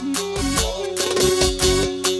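Live band playing fast dance music: a steady beat of about four drum strokes a second under an ornamented melody line.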